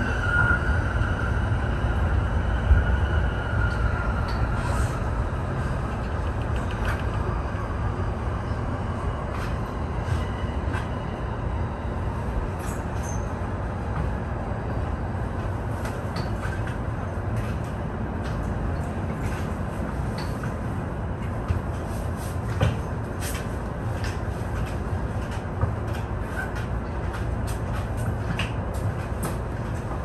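JR East E231-1000 series commuter train running on continuous welded (long) rail, heard from the cab as a steady rumble of wheels on rail, scattered light clicks throughout. A high tone that slowly falls and fades sits over it in the first few seconds. The rail was recently reground, which makes the long-rail running noise ring out.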